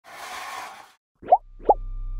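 Cartoon animation sound effects: a short whoosh, then two quick rising plops about half a second apart as graphics pop on screen. A low steady music tone starts just after the second plop.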